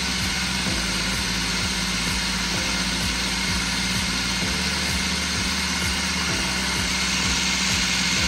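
Electric food processor running continuously with a steady motor whir, blending a thick eggplant dip toward a creamy purée.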